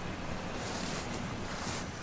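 Steady rushing noise of wind on the microphone, with two brief soft rustles, about a second in and near the end.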